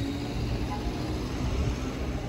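Outdoor street ambience: a steady low rumble with indistinct voices.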